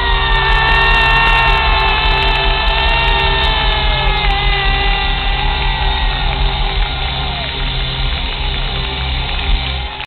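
Live rock band on stage holding a long closing note: sustained pitched lines over a steady heavy bass, the top note sagging slowly in pitch around the middle.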